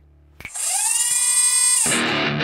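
Intro sound effect: a click, then a loud, high, whining tone that glides up at the start, holds steady for a little over a second and cuts off, leading into the show's guitar theme music.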